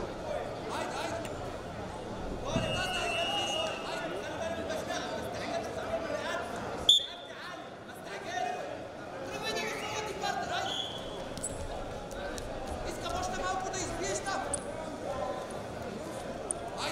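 Voices calling out and echoing in a large hall during wrestling, with scattered thuds on the mat. One short, sharp, high-pitched blip about seven seconds in is the loudest sound.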